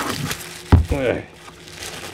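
Plastic wrap crinkling as it is peeled off a magnetic chuck by hand, with a brief vocal sound about three-quarters of a second in.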